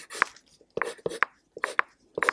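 Pencil scratching on paper in about six short, quick strokes with brief pauses between them, as dark areas of a drawing are shaded in.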